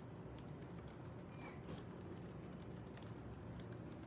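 Faint typing on a computer keyboard: irregular clusters of light key clicks over a low, steady room hum.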